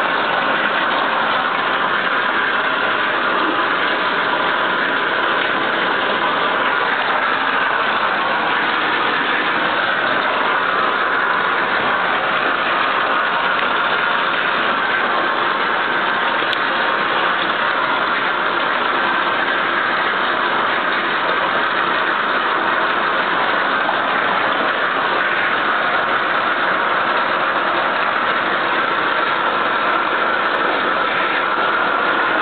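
Bathtub faucet running steadily, water pouring into the tub while hair is washed.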